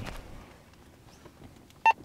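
A handheld walkie-talkie's key beep: one short electronic tone near the end, as a button is pressed to step the radio through its channels.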